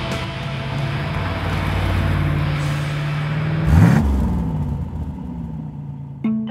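AC Cobra 427 MK6's 7-litre V8 driving past at speed: a steady engine note that swells, then drops in pitch and fades as the car passes about four seconds in.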